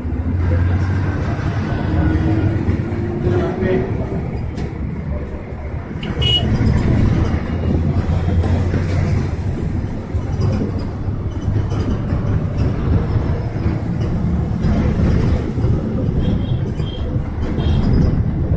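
Bus engine and road noise heard from inside the moving bus, a steady deep rumble, with a whine rising in pitch over the first few seconds as it picks up speed. A brief horn toot sounds about six seconds in.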